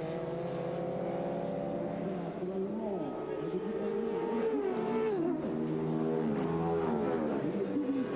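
Racing motorcycle engines at high revs passing the trackside, several bikes in turn. The pitch falls as each one goes by, about three, five and six-and-a-half seconds in.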